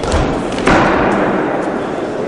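Boxing gloves landing punches: a dull thud about two-thirds of a second in, the loudest sound, after a lighter knock at the start, over the steady noise of the hall.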